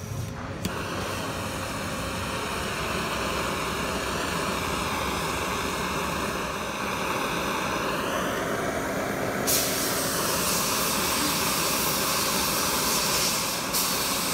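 Handheld gas blowtorch lit and running, its flame playing on a magnesium oxide board: a steady hiss that starts suddenly about half a second in, and turns sharper and louder about two-thirds of the way through.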